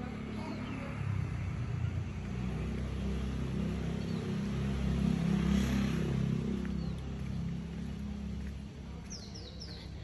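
A car engine running, a low wavering hum that swells around the middle and eases off near the end. A few short high chirps sound just before the end.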